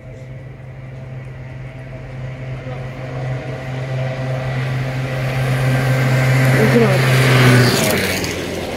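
A car on the road approaching, growing steadily louder, and passing close by just before the end, where its sound drops off sharply.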